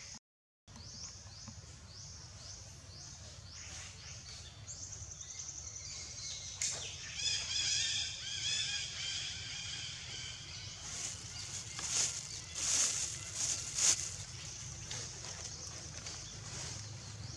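Outdoor wildlife ambience over a low steady rumble. A run of short, falling high-pitched chirps comes first, then a rippling high trill about seven seconds in, then a few louder high calls between about eleven and fourteen seconds.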